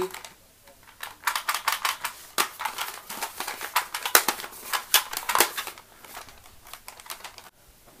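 A quick, irregular run of plastic clicks and rattles from a Nerf shotgun being handled, starting about a second in and stopping after about six seconds.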